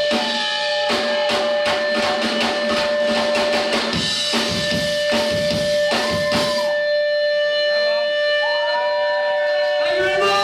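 Punk rock band playing live, with fast, loud drums and electric guitar. The drumming stops about seven seconds in, leaving a held guitar note ringing, with shouting voices over it as the song ends.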